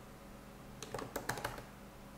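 Faint keystrokes on a computer keyboard: a quick run of clicks about a second in as a line of code is typed.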